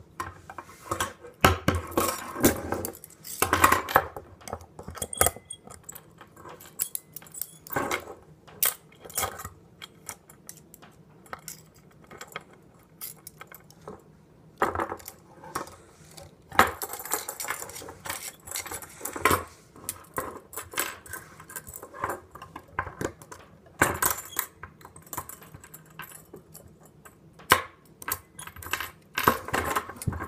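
Metal handcuffs and their key being handled: irregular metallic clinks, rattles and ratchet clicks as the cuffs are worked and unlocked.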